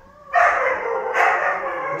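Siberian huskies howling together, starting about a third of a second in: long, loud calls with wavering pitch that overlap one another.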